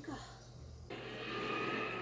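Soundtrack of the anime episode being watched. It is quiet at first, then about a second in a steady rushing noise with faint held tones begins as the scene changes to the battle.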